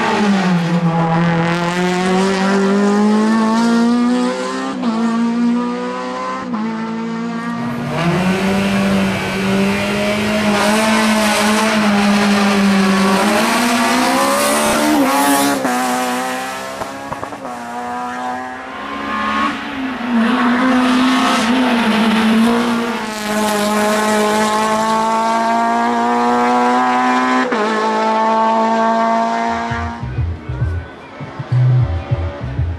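Honda Civic race car's four-cylinder engine pulling hard at high revs. Its pitch climbs steadily and drops sharply at each gear change, several times over.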